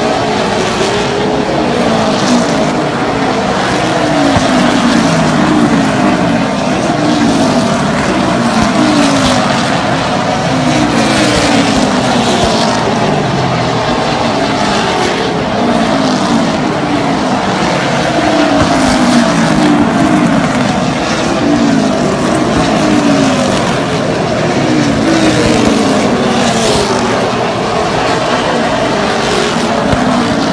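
Super late model stock cars' V8 engines running laps of the oval, loud throughout, with one car after another going by and each engine note falling in pitch as it passes.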